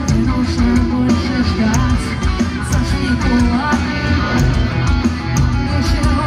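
Live rock band playing loud, with electric guitars, bass, drums and a lead singer, heard through the stage PA from within the crowd.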